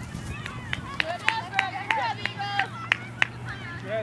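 Spectators' voices calling out from the sideline of an outdoor youth soccer game, with about ten sharp clicks scattered through and a steady low hum beneath.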